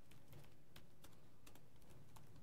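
Laptop keyboard being typed on: a faint, irregular run of key clicks.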